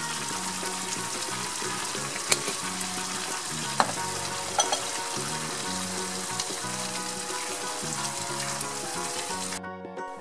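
Vegetables sizzling in a frying pan over a gas flame, with a few sharp clicks of a spatula stirring them. The sizzle cuts off suddenly near the end as the burner is turned off.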